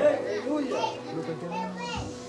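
Children's voices calling and chattering in short, high-pitched bursts, over a faint steady tone.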